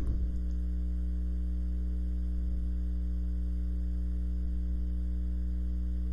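Steady electrical mains hum, a low drone with a ladder of overtones above it, unchanging throughout.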